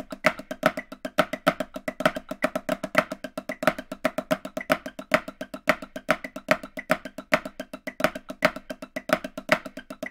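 Snare drum played with wooden sticks: a continuous improvised run of flams through syncopated rhythmic figures at about 110 beats per minute, the strokes rapid and uneven in loudness.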